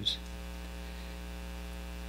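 Steady electrical mains hum, a low buzz with a ladder of evenly spaced overtones, carried through the lectern's microphone and sound system.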